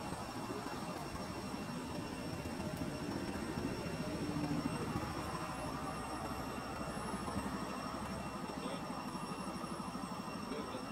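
Steady low rumble of a distant engine, continuous and unchanging, with a faint constant high-pitched hum over it.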